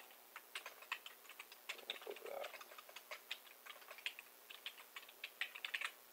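Typing on a computer keyboard: a run of quick, irregular key clicks, fairly faint, with faster flurries near the end.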